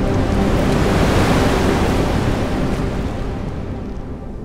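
A rushing, wind-like whoosh in an intro soundtrack. It swells over the first second and then slowly fades away, covering the last of a low, sustained dark synth drone.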